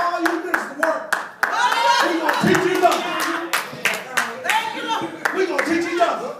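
Congregation clapping: sharp hand claps at a quick, uneven pace, with voices calling out over and between them.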